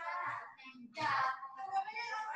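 A child's voice singing, coming through the online class call, with gaps between phrases.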